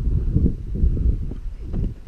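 Wind buffeting an action camera's microphone: an uneven low rumble that rises and falls in gusts.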